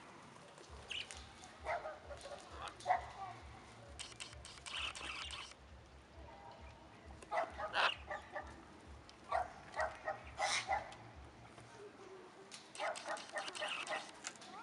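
Parrots in an aviary calling: short, harsh calls in clusters of two to four in quick succession, with pauses between the clusters.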